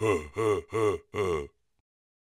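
Cartoon larva character's wordless voice: four short grunting calls, about 0.4 s apart, that stop about a second and a half in.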